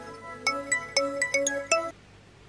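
Mobile phone ringtone: a quick, bright melody of separate notes, which cuts off suddenly near the end as the call is answered.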